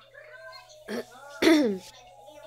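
A woman's cough: a short one just under a second in, then a loud one about a second and a half in, after some soft murmuring.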